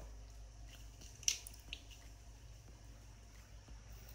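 Faint steady electrical hum, with one sharp small click a little over a second in and a fainter click shortly after, from hands handling the wiring and connectors.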